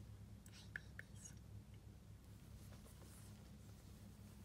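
Near silence: a low steady hum, with a few faint, brief high sounds in the first second and a half.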